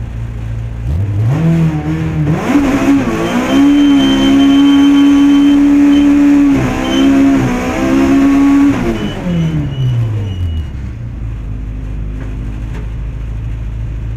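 Opel Kadett kitcar rally car engine, heard from inside the cabin: idling, then revving up about a second in and held at high revs for several seconds with a couple of brief lifts, before the revs drop back to idle near the end.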